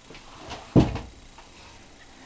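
A single dull thump about three quarters of a second in, from handling a wire flower stem being wrapped in floral tape, with quieter handling noise around it.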